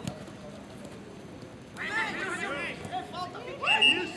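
Footballers shouting to each other across an open pitch during a practice match, the calls starting about two seconds in and loudest near the end. A single sharp knock at the very start, a ball being kicked.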